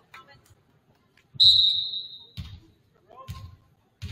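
Referee's whistle blown once, a single steady high tone lasting about a second, signalling the serve. It is followed by a volleyball bounced twice on the hardwood gym floor, about a second apart.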